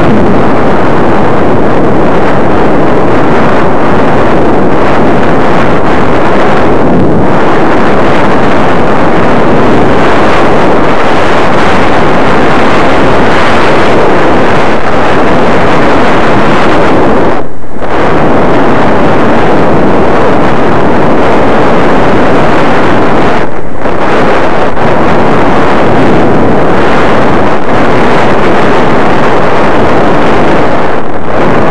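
Wind rushing over the microphone of a skier's head-worn camera during a downhill run: a loud, constant roar of buffeting, with brief lulls about 17 and 23 seconds in.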